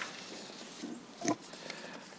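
Quiet room tone over the hearing-room microphones, with faint small noises and one brief soft grunt-like noise about a second and a quarter in.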